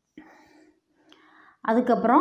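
A woman's voice speaking softly, almost whispered, then picking up into normal speech near the end.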